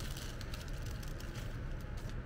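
Thin plastic packaging bag crinkling, with a few light clicks, as small rubber snap-in tyre valves are shaken out into a hand, over a steady low hum.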